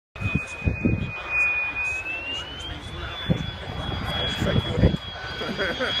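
An F-16 fighter jet's engine approaching low, heard as a high whine that rises in pitch about two seconds in and then holds steady.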